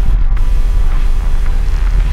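Heavy, steady low rumble of wind and road noise from a moving car, with music playing under it.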